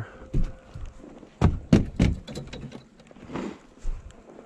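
Footsteps and a few dull thuds, about four in the first two seconds, as someone steps over and knocks against scrap sheet metal and pipes in dry grass, then a brief rustle about three and a half seconds in.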